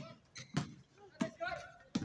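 Basketball being dribbled on an outdoor hard court: sharp bounces about two-thirds of a second apart, with players' voices calling out between them.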